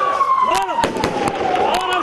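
A siren wailing, its pitch falling slowly and then beginning to rise again near the end, over shouting voices and several sharp cracks.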